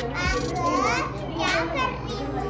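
Young children's high-pitched voices at play, chattering with rising squeal-like calls, and a short click about one and a half seconds in.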